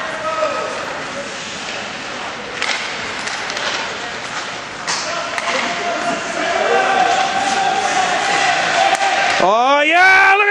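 Ice rink game sound: background voices of spectators, with a few sharp clacks of sticks, puck or boards during play, and a rising shout near the end.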